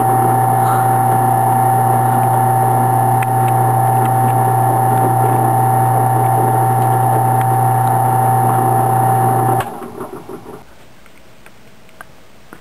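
Benchtop drill press motor running steadily, a low hum with a steady higher whine, while an eighth-inch bit countersinks screw holes in a thin wooden fingerboard deck. The motor is switched off near the end and the sound dies away.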